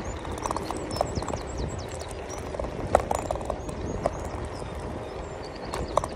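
Electric scooter riding over rough, sandy tarmac: a steady rumble of tyres and wind, with irregular clacks and knocks from the scooter's frame over bumps, the sharpest about halfway.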